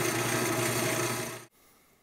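Central Machinery wood lathe running steadily at its lowest speed while a 12.5 mm drill bit is backed out of the spinning acrylic pen blank. The hum cuts off suddenly about one and a half seconds in.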